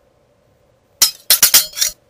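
Title-animation sound effect of a blade slicing: a quick run of about five sharp, bright metallic clinks. It starts about halfway through and stops just before the end.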